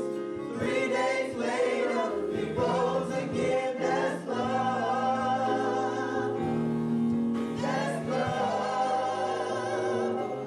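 A gospel praise team of several voices singing together through microphones, with long held notes that waver in pitch.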